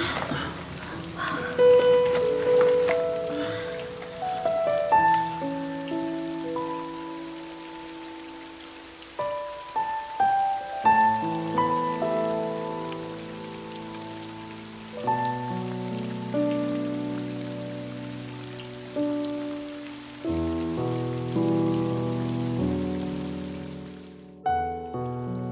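Soft background music of struck notes and sustained chords, each note fading after it is struck, laid over a steady hiss of heavy rain.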